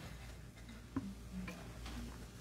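A few faint, irregular clicks and small ticks in a quiet room, the clearest about a second in.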